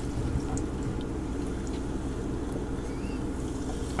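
Faint sips and swallows from a can of sparkling soda, over a steady low hum.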